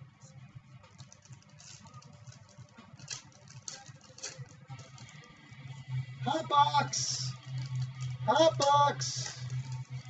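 Small clicks and crinkles of trading-card packs and their box being handled. From about six seconds in, background music with a steady low tone and a voice comes in.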